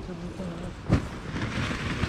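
The rustle of a paraglider's nylon canopy coming down onto the grass, over wind noise, with one sharp knock about a second in.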